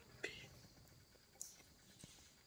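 Near silence with faint whispering, including a short sharp sound just after the start and a brief hiss about a second and a half in.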